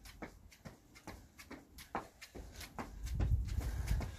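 Trainers striking stone patio slabs in quick, even footfalls, about three or four a second, from jogging on the spot. A low rumble builds near the end.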